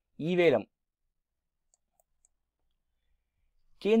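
A voice says one short word, then near silence broken by three faint computer mouse clicks a fraction of a second apart.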